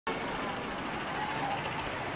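City street ambience: a steady wash of noise with a rapid mechanical rattle running through it and faint voices, starting abruptly at the opening.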